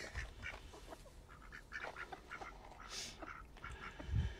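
Mallard ducks quacking faintly, a string of short, separate quacks.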